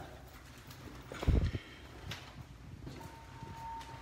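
Footsteps and handling knocks in a stairwell, the loudest a dull low thump just over a second in, with a few lighter clicks after it. A short steady beep sounds near the end.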